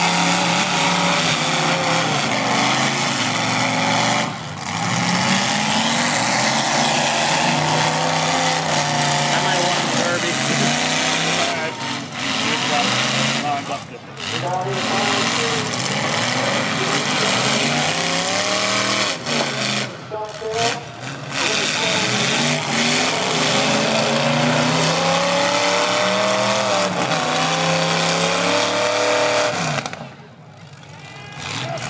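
Demolition derby cars' engines revving hard and dropping back over and over, several engines overlapping, as the full-size cars accelerate and ram one another in the dirt arena. The engine note rises and falls without a break, apart from a few brief lulls.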